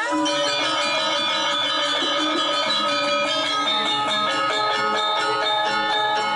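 Balinese gong kebyar gamelan playing dance music: bronze metallophones strike rapid strokes over steady ringing tones.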